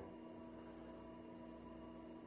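Faint steady hum over quiet room tone.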